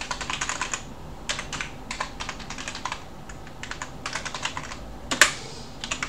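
Computer keyboard typing: runs of quick keystrokes broken by short pauses, with one louder key strike about five seconds in.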